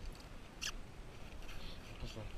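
Gear being handled in an open tackle bag: low rustling and handling noise with one short, sharp high squeak about two-thirds of a second in.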